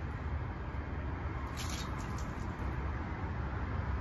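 Steady low background rumble with a few faint ticks about a second and a half in.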